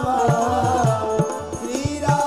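A man singing a Hindu devotional chant into a microphone, with a wavering, drawn-out melody, over drums beating a steady rhythm.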